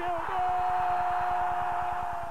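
Football stadium crowd cheering as a goal goes in, with one long steady held note over the cheering.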